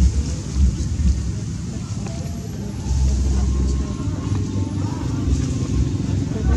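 A steady low rumble, heaviest about three seconds in, with faint distant voices under it.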